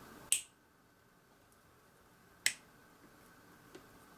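Two sharp plastic clicks about two seconds apart, with a fainter click near the end, as the left and right halves of a plastic scale-model engine block are pressed together.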